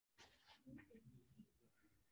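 Near silence: room tone with a faint, brief spoken "да" about half a second in.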